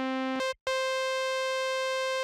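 1973 Korg MiniKorg 700 monophonic synthesizer holding one steady note, rich in overtones. About half a second in, the note cuts out for an instant and comes back an octave higher as the octave footage selector is switched.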